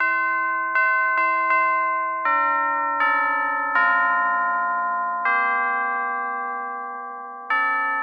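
Music: a slow melody played on bell-like chimes, each struck note ringing and fading, with notes about every half second to second and a half.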